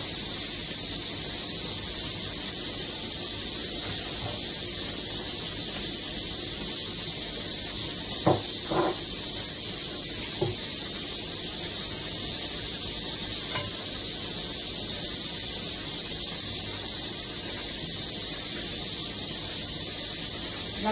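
Steady hiss of steam from a pressure cooker (cocotte) cooking on the stove, with a few brief faint handling sounds between about eight and fourteen seconds in.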